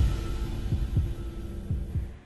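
The tail of electronic intro music fading out: deep thumps over a sustained low hum, with the higher parts dying away toward the end.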